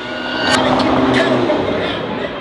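Music blasting from a passing convertible's car stereo, mixed with the car's road noise and growing louder about half a second in.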